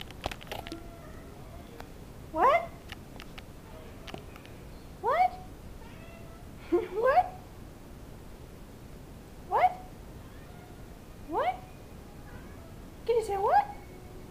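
Domestic cat meowing: a series of short calls spaced a couple of seconds apart, each rising sharply in pitch.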